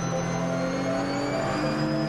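Race car engine heard from inside the cockpit, its pitch climbing steadily under acceleration.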